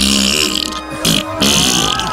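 Comic fart sound effect, two raspy blasts with a low rumble, over background music, marking a failed jump.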